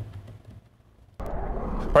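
A short lull, then a steady low rumbling noise cuts in suddenly about a second in.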